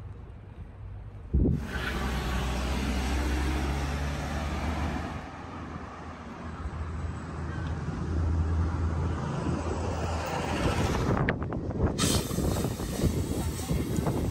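Outdoor street noise: a steady low rumble with hiss, like traffic, that starts suddenly about a second and a half in. It changes abruptly near the end to busier, irregular street sounds.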